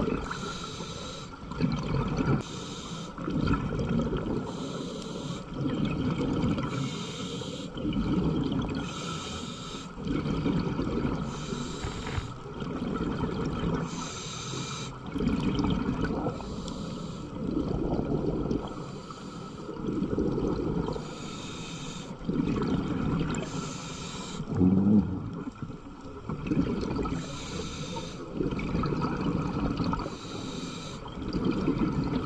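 Scuba regulator breathing heard underwater: each breath is a hiss of inhaled air followed by a rush of exhaled bubbles, repeating about every two seconds.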